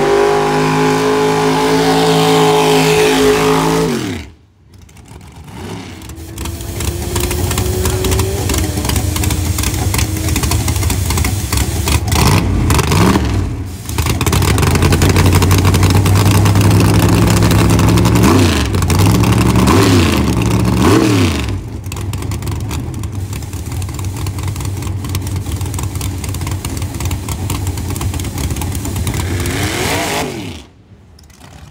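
Drag-race car engines in several short cuts. One is held at steady high revs and drops off suddenly about four seconds in. Then engines run loudly with repeated quick rev blips, and a steadier, lower rumble follows near the end.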